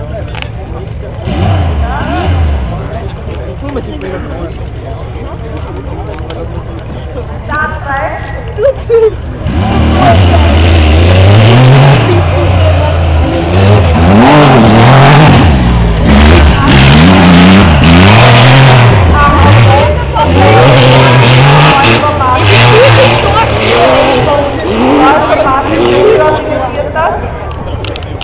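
Autocross buggy engine racing on a dirt track, fairly distant at first. About ten seconds in it becomes much louder as the car comes close, its pitch climbing and dropping again and again as it revs up through the gears.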